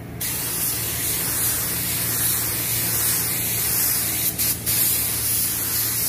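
Paint spray gun spraying in a steady hiss, with two brief breaks about four and a half seconds in as the trigger is let off.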